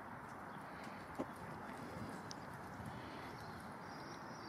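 Steady outdoor street background noise, with scattered faint clicks and a single sharp tap about a second in.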